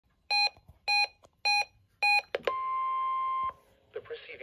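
Reecom NOAA weather alert radio giving four short electronic beeps, then its small speaker playing the National Weather Service warning alarm tone, a steady 1050 Hz tone, for about a second before it cuts off. This is the radio sounding off for a Required Weekly Test.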